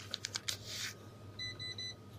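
Light clicks and a rustle of scratchcards being handled, then three quick electronic beeps from the lottery terminal as a card is checked.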